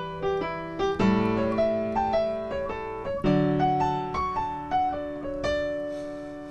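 Piano playing a II–V–I in D: right-hand eighth-note arpeggios over left-hand shell chords, moving from E minor 7 to A7 about a second in, to D major 7 about three seconds in. The arpeggios, connected by step between chords, end on a held note about five and a half seconds in that rings and fades.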